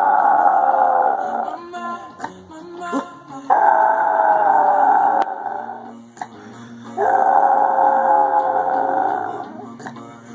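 Yorkshire terrier howling along to a song: three long howls, each a couple of seconds long and gently falling in pitch, the first already under way at the start. Pop music with acoustic guitar plays quietly between them.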